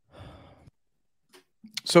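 A man breathing audibly into a close microphone, a soft sigh-like breath in two short parts, before he starts to speak near the end.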